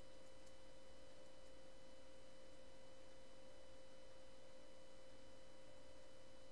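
Quiet room tone with a steady faint electrical hum and a couple of faint clicks shortly after the start.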